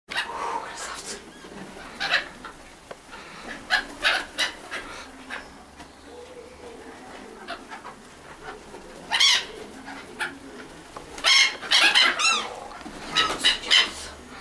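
A flock of black-headed gulls calling around the camera: short cries, scattered at first, then coming thick and loud in the last five seconds.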